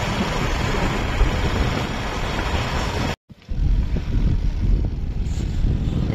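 Loud, rough wind and road noise on the microphone of a moving vehicle. It drops out suddenly for a moment about three seconds in, then comes back duller.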